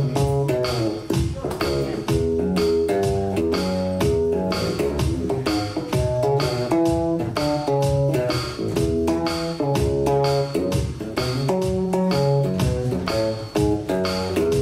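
Electric blues played live: a hollow-body electric guitar plays over a bass line and a steady beat, with no vocal.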